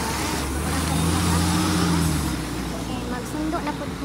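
Articulated city bus driving past close by and pulling away, its engine hum and road noise loudest about one to two seconds in, then fading as it moves off.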